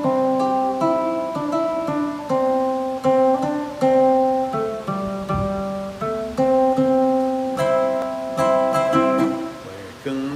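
Ukulele played solo in the key of C: an instrumental intro of picked and strummed chords with a simple melody, new notes struck about every half second.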